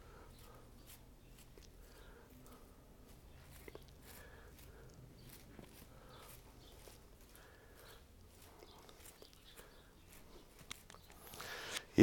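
Faint, scattered small clicks and rustles of hands working through the twigs and leaves of a Chinese elm bonsai, picking off leaves.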